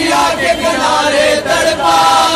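Male voices chanting a noha, a Shia mourning lament, with several voices singing long, bending melodic lines together.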